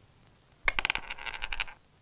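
A quick run of bright metallic clinks, like small coins jingling, starting just over half a second in and lasting about a second: a cartoon sound effect.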